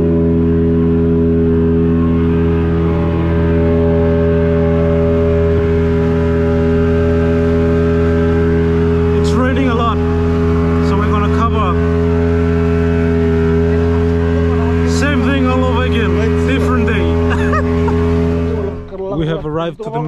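A small boat's outboard motor running at a steady speed, a constant droning hum with an even pitch, which stops abruptly about a second before the end.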